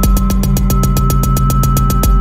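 Live-coded electronic music: drum-machine samples repeated into a fast, even roll of more than ten hits a second, over a sustained low tone and a steady high tone.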